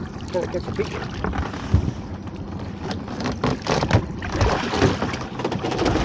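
Netted lobster pot being hauled up over the side of a small boat, sea water splashing and dripping off it, with several sharp knocks as the pot's frame strikes the boat. Wind is on the microphone throughout.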